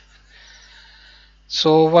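A man's lecturing voice pauses: about a second and a half of quiet with only a faint soft hiss. Then he says "so" near the end.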